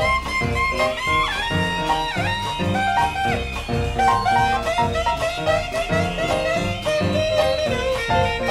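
Live small-group jazz recording: a lead horn line, with notes that bend in pitch, over piano, drums and a steady low pulsing bass line.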